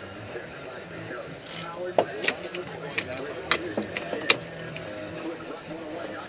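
Sailboat deck hardware on the mainsail outhaul line giving a handful of sharp, irregular clicks as the line is worked, over a steady rush of wind and water.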